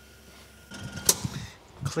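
Door of a sheet-metal powder-coating oven being unlatched and opened: a sharp metal clack about a second in, with shuffling and handling noise around it.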